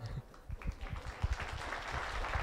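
Scattered audience clapping in a hall, starting about half a second in and continuing quietly.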